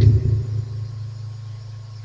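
A low, steady rumble with a hum-like pitch that fades gradually over the two seconds.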